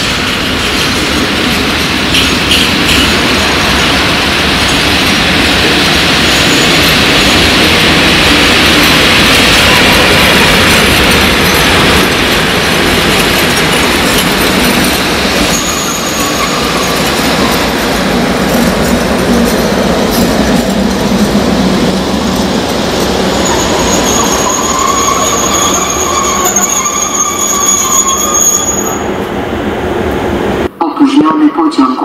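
ET22 six-axle electric freight locomotive running light past the platform. Its rumble swells to a peak midway. From about halfway its wheels squeal in high, drawn-out tones that are strongest near the end.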